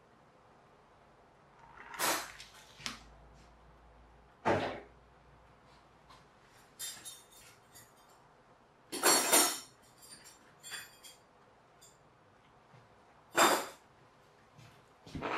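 A string of separate household knocks and clatters, like cupboard doors and drawers being opened and shut, several seconds apart. The loudest come about nine seconds in and near the end.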